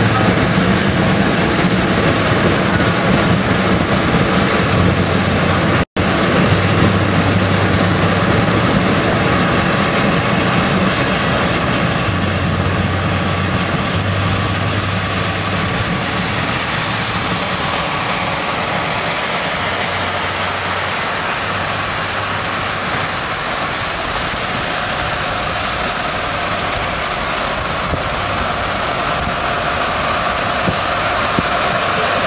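Steady road noise inside a moving vehicle on a rain-soaked road: tyre hiss on wet pavement and rain, over a low engine drone that comes and goes. The sound cuts out completely for an instant about six seconds in.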